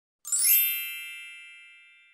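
A bright chime sound effect: one ding with a high shimmering sparkle on top, coming in suddenly about a quarter second in and ringing out slowly, the sparkle fading first.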